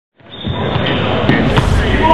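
Basketball dribbled on a hardwood gym court, with sharp bounces among players' voices and the echo of the hall, fading in over the first half-second.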